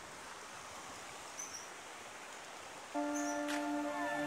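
Steady rushing of a shallow river's water over rocks, with a couple of faint high chirps; background music comes back in about three seconds in.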